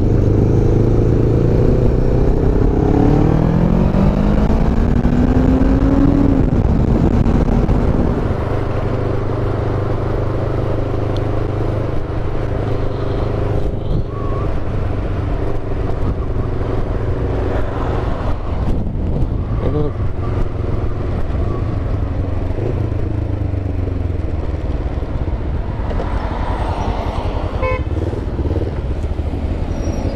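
Motorcycle engine, a Kawasaki ER-5 parallel twin, heard on the ride with wind rushing over the microphone. In the first few seconds it accelerates with a rising pitch, then runs steadier and lower while riding in traffic.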